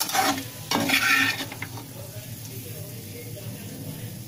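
Metal spatula scraping and scooping cooked potato and cauliflower sabzi around a metal kadai, in two scraping bursts in the first two seconds, then a faint steady hiss.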